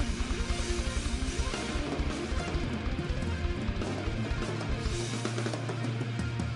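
A rock band playing live: electric guitar over a fast run of heavy low hits, settling into a held low chord about five seconds in.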